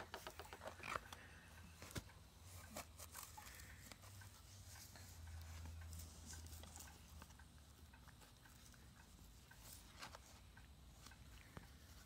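Near silence with faint, scattered light clicks and rustles of a cat pawing at a cardboard coffee sleeve on carpet, busiest in the first few seconds.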